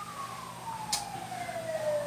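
A faint emergency-vehicle siren: one long tone falling steadily in pitch, with a single small click about a second in.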